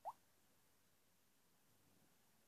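A single short, faint rising blip at the very start, the phone's touch sound as the screen is tapped; otherwise near silence.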